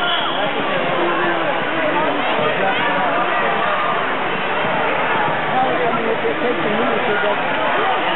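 Crowd of spectators talking, many overlapping voices in a steady babble.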